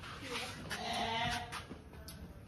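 A sheep bleats once, a quavering call of under a second around the middle.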